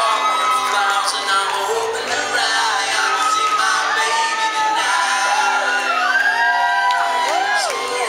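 Live band music with several male voices singing together in harmony, and sliding whoops over the top, several of them near the end.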